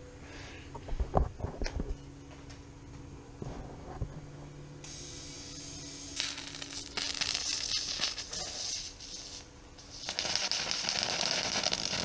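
TIG welding arc on aluminium plate: a crackling hiss that starts about five seconds in, breaks off briefly near ten seconds and comes back louder, over a steady low hum. The torch's tungsten tip is burned away. A few knocks of handling come early on.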